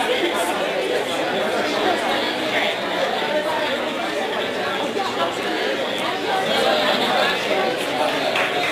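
Many people talking at once in a large room: a steady hum of crowd chatter in which no single voice stands out.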